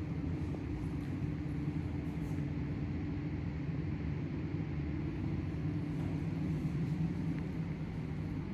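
A steady low hum and rumble of background noise, even throughout, with no distinct events.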